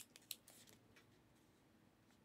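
A few faint crisp clicks and crinkles of trading cards and pack wrappers being handled in the first second, then near silence.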